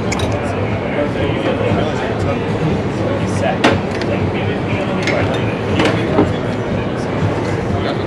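Busy patio ambience: a steady noisy background with the murmur of other diners' voices, and a few sharp clicks of cutlery against plates and a tray, the clearest nearly four seconds in and again about two seconds later.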